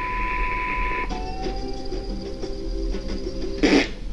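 A steady 1 kHz test-tone beep, the kind played over colour bars, which cuts off about a second in. It is followed by a few seconds of music-like pitched notes and a short loud burst just before the end.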